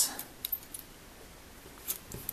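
Small clicks and a light clink of a pair of scissors being picked up: one about half a second in, another near the end, with quiet in between.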